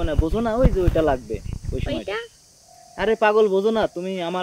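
Speech: two people talking in conversation, with a short pause a little past the middle and a low rumble under the voices during the first half.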